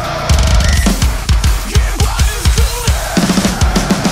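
A CMC birch acoustic drum kit with Meinl cymbals played hard over the song's backing track: fast, busy kick drum strokes with snare hits and cymbal crashes, a crash cymbal struck right at the start.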